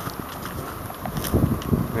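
Steady rush of a river running over shallow rocky riffles, with a few low bumps and rustles about halfway through.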